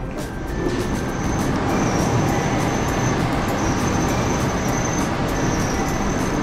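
Loud, steady rushing noise, a little louder after the first second or so, with a faint high-pitched whine that comes and goes.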